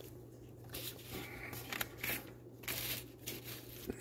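Gloved hands handling a paper sanding disc and its cardboard packaging card on a wooden bench: a string of faint, brief rustles and scrapes, over a low steady hum.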